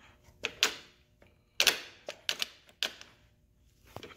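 Shift linkage of a Honda K20A2 six-speed transmission being worked through its gears by cables: several sharp metallic clicks and clunks, irregularly spaced, as the shift levers move and the gears engage.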